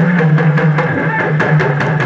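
Drum-led music: a quick run of sharp drum strikes, several a second, over a sustained low tone.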